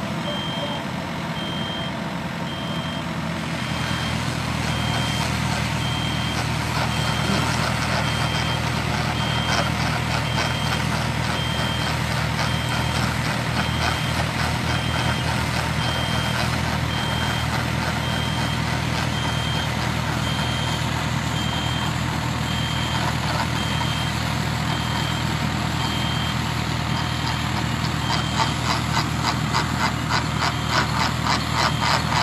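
Engine of a tracked core-drilling rig running steadily, with a high warning beeper sounding about once a second over it.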